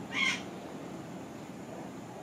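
A cinnamon hummingbird gives a single short, high call a fraction of a second in, over steady low background noise.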